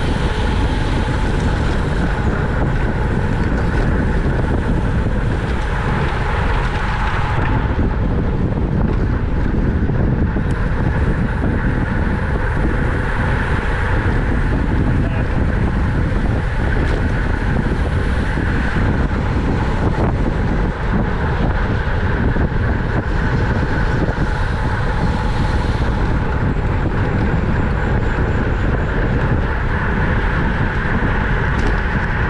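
Steady wind rumble on a bike-mounted camera's microphone while riding in a racing pack at close to 30 mph, with a continuous road-speed hiss over it.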